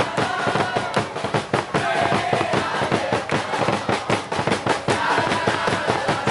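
A group of football fans clapping their hands in a dense, irregular patter while singing a chant together.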